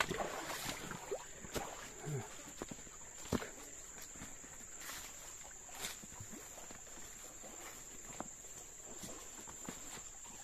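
A steady high-pitched insect drone, with the occasional crunch of footsteps on dry leaves and twigs.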